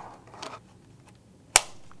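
A calculator cradle snapping into place on top of a Vernier LabPro interface: one sharp click about a second and a half in.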